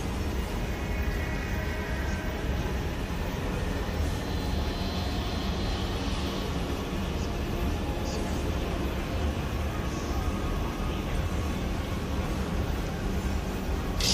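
Steady rumbling noise drone with a deep low end and faint high tones, no beat, part of an industrial electronic music track.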